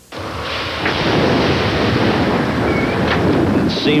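Heavy rain with a low rumble of thunder, a storm sound that starts abruptly and runs on steadily.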